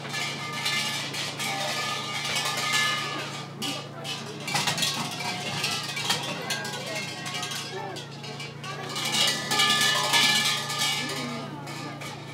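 Large shrine bells (suzu) rattling and jangling as worshippers shake their hanging ropes. The bells ring in two loud spells, one over the first few seconds and another about nine to eleven seconds in, over the chatter of a crowd.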